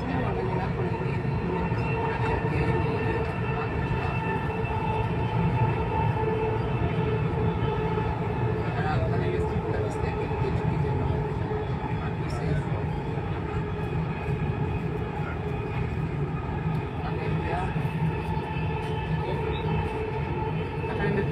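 Dubai Metro train running at speed, heard from inside the carriage: a steady rumble from the wheels on the track with a constant whine of several held tones from the drive.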